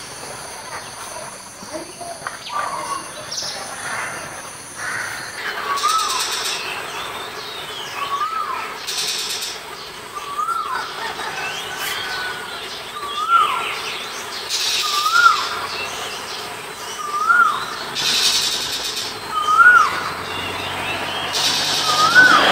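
A songbird repeating one short whistled note that rises and then drops in pitch, every couple of seconds from about five seconds in. High insect buzzing sits behind it: steady at first, then in short hissing bursts every few seconds.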